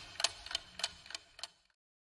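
Clock-ticking sound effect counting down the time to answer a quiz question, about three even ticks a second, stopping suddenly about one and a half seconds in.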